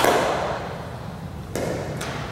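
A baseball bat striking a ball with a sharp crack that rings on in a gym's echo, followed about one and a half seconds later by a quieter thud.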